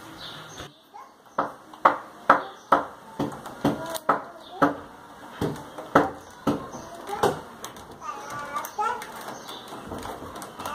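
A series of sharp knocks, roughly two a second for several seconds, followed briefly by a faint voice near the end.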